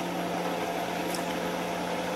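Steady machine-like hum with hiss, with one faint tick about halfway through.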